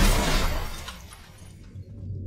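Logo-reveal sound effect: a sudden crash-like hit whose bright, hissy tail fades away over about a second and a half, over a low rumble.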